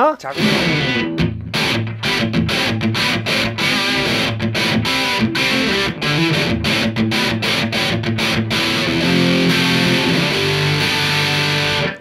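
Electric guitar played through a Wampler Sovereign distortion pedal: a riff of repeated distorted chord strikes, then longer ringing chords in the last few seconds. The distortion is of moderate gain, lighter than expected for a distortion pedal.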